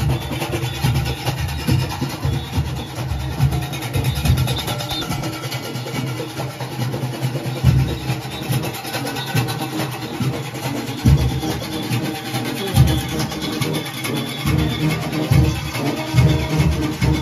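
Junkanoo band music: goatskin drums beating in a dense, steady rhythm under cowbells and horns.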